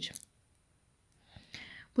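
A pause in a woman's speech: her word trails off at the start, then near silence, then a faint breathy noise in the last second before she speaks again.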